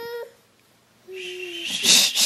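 A baby's voice: a brief high note at the start, then about a second in a steady held note that ends in a breathy rush.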